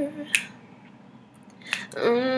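Pause in a woman's a cappella singing: her held note fades away just after the start, and two short, sharp mouth or breath sounds come about a third of a second in and again just before she sings the next line. Between them the room is nearly quiet.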